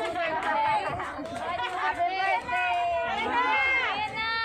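Several people talking and calling out over one another: lively group chatter with no single clear speaker.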